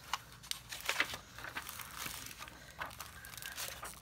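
Paper envelope and a clear plastic sticker sleeve rustling and crinkling as they are handled and opened by hand, with a patter of irregular crackles.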